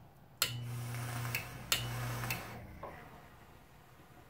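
Homemade 120-volt AC mains-powered e-cigarette fired twice. Each press of the switch sets off a sharp click from its 24-volt AC relay, then a steady low electrical buzz with a hiss as the coil vaporises while he draws: the first lasts about a second, the second about half a second.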